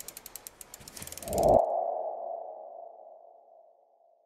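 Logo-reveal sound effect: a quick run of clicks that speeds up under a rising whoosh. About one and a half seconds in it peaks, and a single ringing tone follows and fades out shortly before the end.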